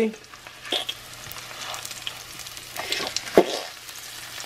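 Breaded chicken cutlets sizzling in shallow oil in a stainless steel frying pan: a steady hiss with scattered crackling. A few sharp clicks come through, the loudest a little over three seconds in.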